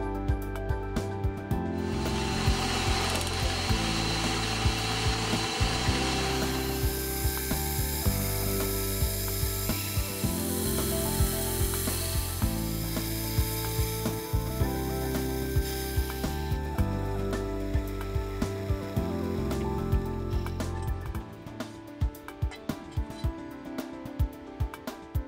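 Drill press drilling a centre hole through a plate of precision-ground tool steel. The cutting noise starts about two seconds in and stops about two-thirds of the way through.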